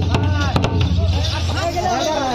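Crowd voices and chatter, with a few sharp strokes on a large barrel drum in the first second. A steady low hum runs underneath and cuts out shortly before the end.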